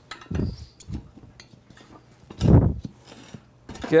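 Metal tire spoons clicking against a dirt bike's spoked rim while the rear tire's bead is worked down and popped off the rim. Three dull thuds come from the tire, the loudest about two and a half seconds in.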